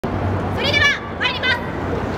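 Two short, high-pitched shouted calls from a voice, each bending in pitch, over a low steady hum and the general noise of an outdoor crowd.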